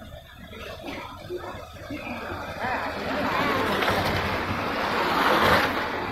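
A rushing noise that swells from about two seconds in and is loudest near the end.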